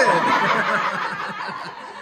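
Women laughing, loudest at the start and tapering off.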